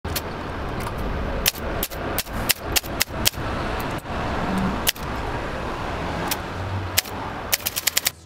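Manual typewriter keys striking the paper: a dozen or more sharp, irregular clacks, with a quick flurry near the end, over a steady low background hiss.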